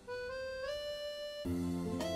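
Background music: a thin melody line that steps up in pitch about a third of the way in. Fuller music with low notes comes back in after about a second and a half.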